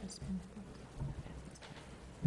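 Faint room noise in a quiet meeting room, with a few soft, low thumps about a third of a second in and again about a second in.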